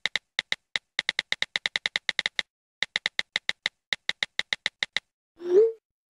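Typing sound effect: a run of identical keystroke clicks, about six a second, broken by short pauses. Near the end comes a single short, louder sound with a brief upward slide in pitch.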